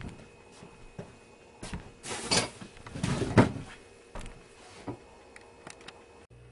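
Scattered knocks and clicks with bouts of rustling and scraping, the handling noise of someone moving about and putting things down, loudest between about two and three and a half seconds in.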